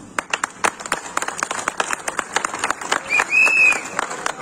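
Crowd applauding with many irregular claps. Near the end a short high whistle is followed by a longer one, the loudest sound.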